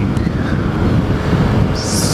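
Honda CBR600RR sportbike under way at road speed: a steady rush of wind, engine and road noise on the rider's camera microphone.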